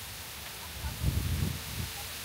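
A brief gust of wind buffeting the microphone, a low rumble lasting about half a second starting about a second in, over a steady outdoor hiss.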